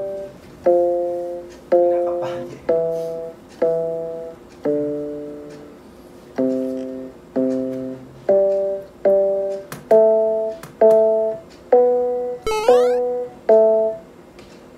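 Small electronic keyboard played one note at a time with one finger, about one note a second. Most notes come in repeated pairs, each starting sharply and fading away. A short rising high sound comes near the end.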